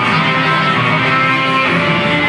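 Live chanson band playing an instrumental passage led by guitar, before the vocals come in.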